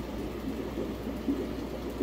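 Steady, even water noise of running aquarium filtration, with a low hum underneath.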